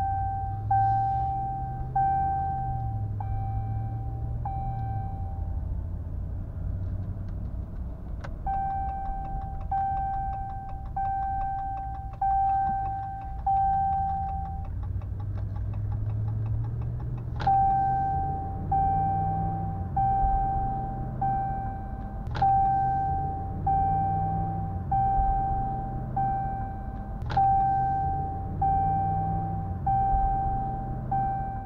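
Ram pickup's seatbelt warning chime dinging rapidly and steadily, under two dings a second, because the driver's belt is unbuckled. It stops twice for a few seconds and starts again, over the truck's engine and road noise in the cab, with a few sharp clicks.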